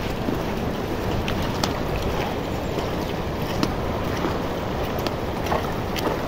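A steady rushing noise, with a few sharp clicks of goat hooves on the stony path scattered through it.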